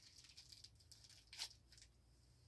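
Near silence with faint crinkling of plastic lollipop wrappers as one lollipop is picked from a handful, with one brief louder rustle a little after halfway.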